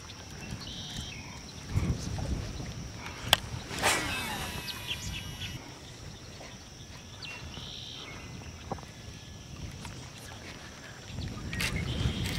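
Outdoor ambience from a small fishing boat on a lake: faint water and wind noise with a few short bird chirps and a faint steady high whine. A sharp click about three seconds in, followed by a brief swish.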